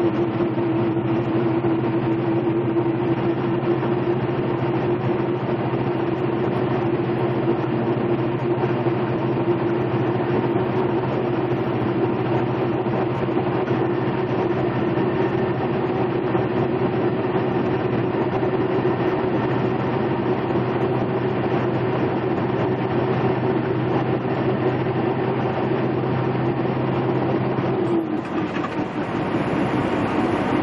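Tractor-trailer's diesel engine running steadily under load, heard from inside the cab over tyre and road noise. Its steady drone cuts off near the end and the sound briefly drops.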